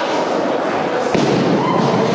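Barbell loaded with rubber bumper plates dropped from overhead onto the lifting platform after a jerk: one sharp crash about a second in.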